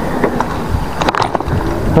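Wind buffeting an action camera's microphone over the rolling noise of a mountain bike's tyres on asphalt, with a few short clicks or rattles about a second in.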